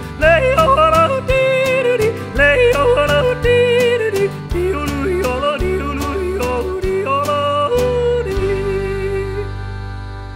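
A man yodelling in a country song, his voice flipping quickly between low and high notes over instrumental backing. Near the end he holds one long note, and the final chord then rings out and fades as the song ends.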